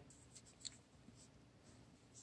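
Near silence: room tone, with two faint ticks about a third of a second and two thirds of a second in.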